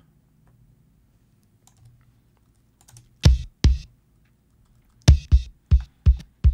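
Isolated kick drum track playing back after strip silence has cut out the bleed from the other drums. There are two hits about three seconds in, then three more in quicker succession near the end. Each is a short low hit with a sharp click of attack, and the gaps between hits are completely silent. A few faint clicks come in the first seconds.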